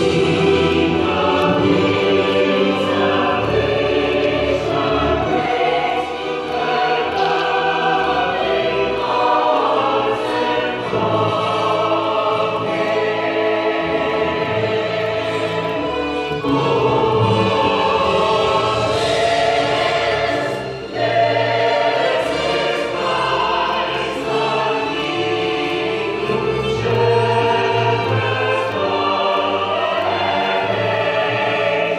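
Mixed choir of men's and women's voices singing together in sustained phrases, with a brief break between phrases about two-thirds of the way through.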